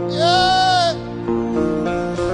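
Live gospel worship music: a singer holds one high note, arching slightly up and back down, over sustained instrumental chords.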